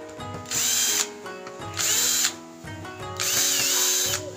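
Cordless drill-driver backing screws out of a TV's plastic back cover, in three short runs of about half a second or more each, its motor whine rising and falling with each run.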